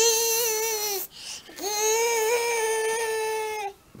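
A toddler imitating a drill with their voice: two long, high-pitched, steady tones, the first about a second long, then after a brief break a longer second one.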